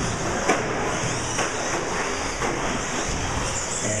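Several 1/10-scale electric short-course RC trucks running on an indoor track: a steady blend of high motor whine and tyre noise, with a couple of sharp knocks about half a second and a second and a half in.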